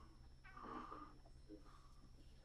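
Near silence: room tone with a faint, indistinct sound between about half a second and a second in.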